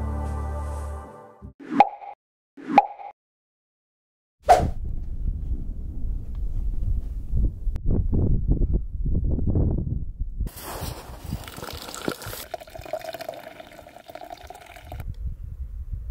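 Background music fades out, followed by two short pops about a second apart. From about four seconds in, a low, uneven rumble of wind on the microphone. About ten seconds in, a hot drink is poured from an insulated bottle into a tumbler: a rushing, filling sound lasting about four seconds that stops suddenly.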